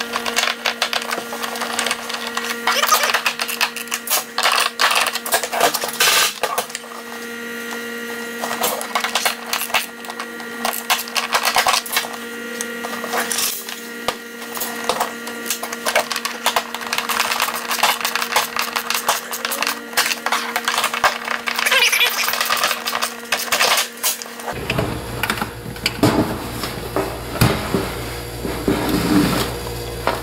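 Irregular clicks, taps and knocks of a plastic electric-heater housing being handled and its cover screwed back on with a screwdriver. A faint steady hum runs underneath and changes at a cut near the end.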